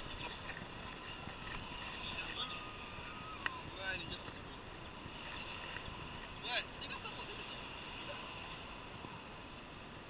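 Faint, indistinct voices in short snatches over a low steady background, with a sharp click about three and a half seconds in and a louder brief sound near six and a half seconds.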